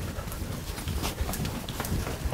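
Quick footsteps on a hard corridor floor: a run of light, irregular taps over a low rumble.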